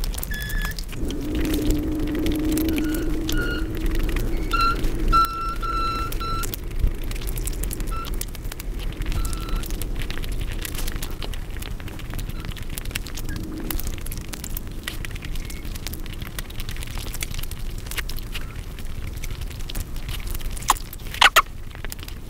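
Close-miked eating sounds: wet chewing and mouth smacking with many small clicks and crackles, as food is picked up and eaten with the fingers. A low hum comes in the first few seconds, and there are a few short squeaky tones about five seconds in.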